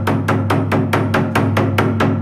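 Tsugaru shamisen and taiko music: a fast, even run of sharp strokes, about six a second, over a steady low tone.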